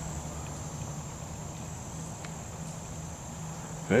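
Steady, high-pitched insect chorus, a continuous shrill buzz that holds without a break.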